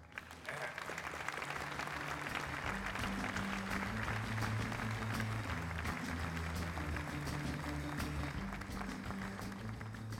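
Audience applauding, starting sharply about half a second in and easing off near the end, over ceremony music with a low, stepping bass line.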